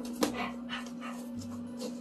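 A man panting like a dog in quick, breathy puffs, about four a second, over a steady low hum.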